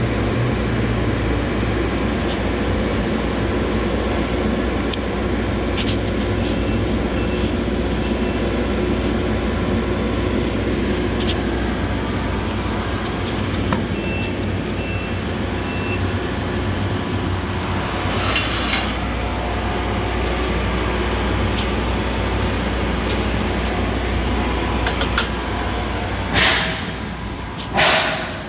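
A steady, continuous engine-like mechanical drone with a low hum, running throughout. There are a few brief louder noises near the end.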